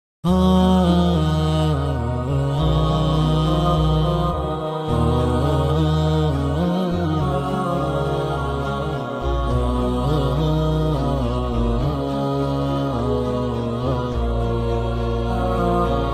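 Background nasheed intro: a sustained low vocal drone, shifting note every few seconds, under a wordless chanted melody.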